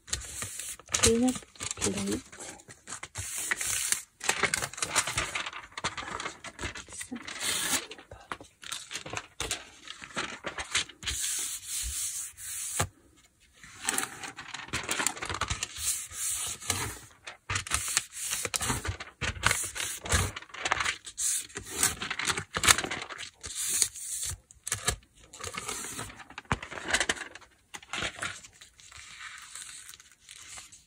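Hands rubbing and smoothing a paper envelope pressed onto a Gelli gel printing plate, burnishing it to lift the paint print. The papery rubbing and rustling comes in irregular strokes.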